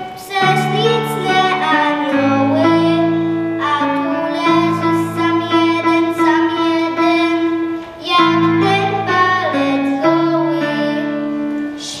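A group of young children singing a Christmas carol together over instrumental accompaniment, with steady held bass notes under the melody. There are short breaks between phrases near the start and about eight seconds in.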